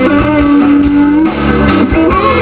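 Live band playing loud amplified music, with guitar prominent; one note is held for about a second.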